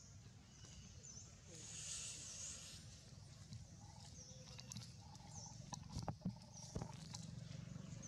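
Quiet forest ambience: a short high chirp repeating about once a second over a low steady rumble, with a brief hiss about two seconds in and a few sharp clicks near six seconds in.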